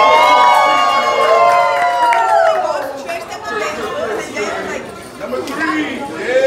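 A group of children's high voices rising together in a long held cheer for about two and a half seconds, then settling into excited chatter.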